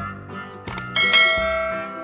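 Subscribe-button sound effects over background music: a quick double click about two-thirds of a second in, then a bright notification-bell ding that rings and slowly fades.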